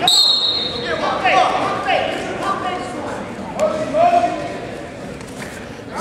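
A referee's whistle gives a short blast at the start, restarting the wrestling bout. After it come several short shouts from voices in the hall and a few dull thuds.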